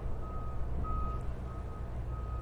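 A vehicle's reversing alarm beeping at an even pace, three beeps in the two seconds, over a low steady rumble.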